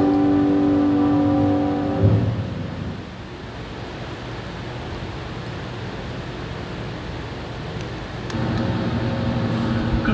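The held final chord of a sung hymn ends about two seconds in with a soft thump. A steady room hum and hiss follow, and a low hum grows louder near the end.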